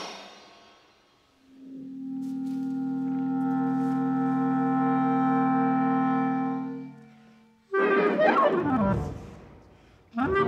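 Clarinet with live electronics: a long sustained low note that swells in about a second and a half in, is held steady, and fades out around seven seconds, then a sudden loud figure with pitches sweeping downward that dies away.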